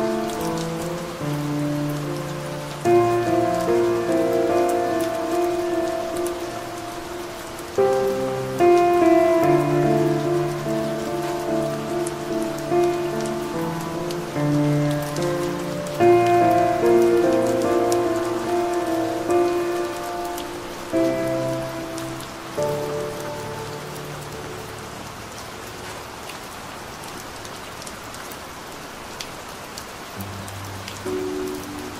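Calm piano music playing slow, gently struck chords over a steady sound of soft rain. The piano thins out and goes quiet for the last several seconds, leaving mainly the rain.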